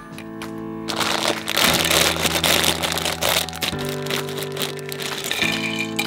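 Background music with steady held notes. From about a second in, for a couple of seconds, a plastic parts bag crinkles and crackles loudly as it is handled and small plastic parts are tipped out.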